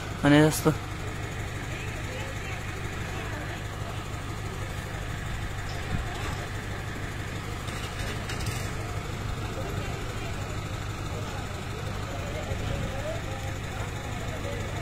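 A mobile crane's engine running steadily as a low, even hum, with a short call from a voice just after the start.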